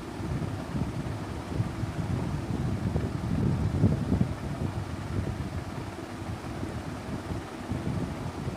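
Low, uneven rumble of moving air buffeting the microphone, rising and falling in strength.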